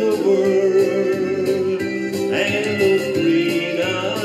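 Country song playing: long held notes over guitar with a steady beat.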